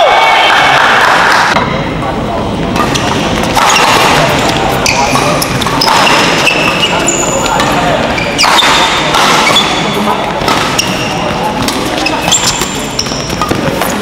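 Indoor badminton doubles play: sharp racket hits on the shuttlecock and short, high squeaks of court shoes on the floor, with voices in the hall.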